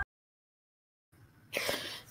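Dead silence for about the first second, then faint room tone. In the last half second comes a soft intake of breath with a mouth click, just before a woman starts to speak.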